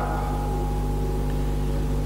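Steady electrical hum with light hiss from an old camcorder recording: a low buzz with several even overtones and a faint higher whine, unchanging throughout.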